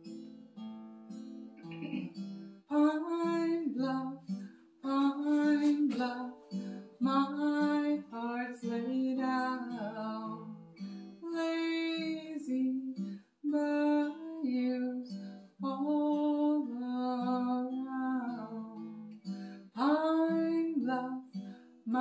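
Acoustic guitar being played, with a woman singing over it from about three seconds in.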